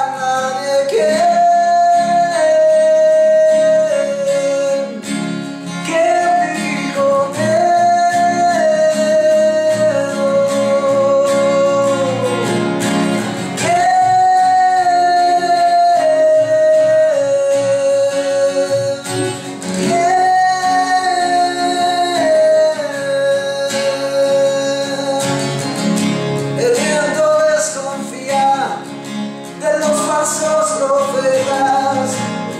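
A rock band playing a song: a singer holding long notes in phrases that step down in pitch, over guitar and a full band backing.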